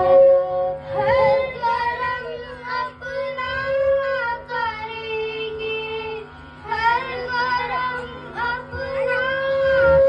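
Two young girls singing a Hindi patriotic (desh bhakti) song together into a microphone, with long held notes and a short break about six seconds in.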